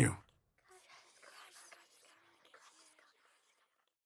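The narrator's last word trails off, then a faint whispering voice runs for about two and a half seconds and dies away.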